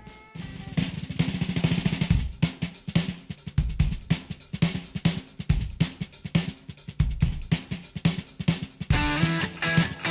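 Rock drum kit played in a fast, busy beat of dense drum and cymbal hits. An electric guitar joins about nine seconds in.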